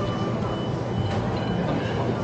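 Steady low rumble of background noise in a large indoor dining hall, with faint steady high-pitched tones over it and a light click about a second in.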